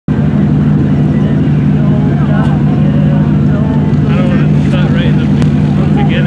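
Steady low drone of vehicle engines idling, running evenly.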